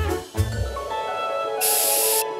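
Cartoon background music holding a sustained chord; near the end, a short hiss from an aerosol spray-paint can.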